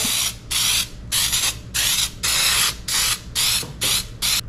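Aerosol can of cooking-oil spray hissing in a series of short bursts, about two a second, as it greases a ceramic baking dish.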